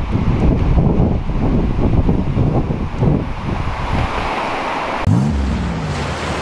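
Ocean surf breaking on the beach with wind buffeting the microphone, a dense steady rumble. About five seconds in it cuts off and a short pitched sound glides up and down.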